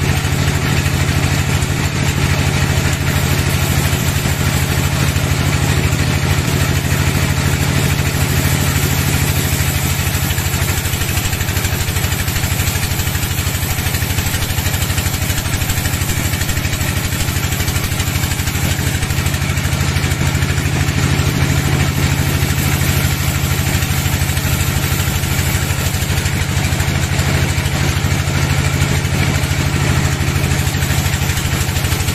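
Bandsaw mill running steadily as its blade saws through a teak log, an unbroken engine drone with a low hum under the cutting noise.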